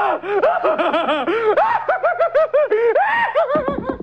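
High-pitched laughter: a long, unbroken run of quick giggles, each one rising and falling in pitch, stopping just before the end.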